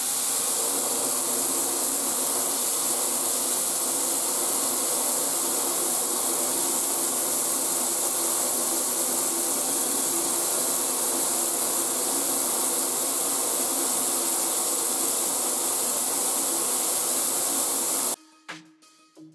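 Mirable shower head spraying a steady stream of fine jets onto a bathtub, a continuous even hiss with no change in strength. It cuts off suddenly at the end.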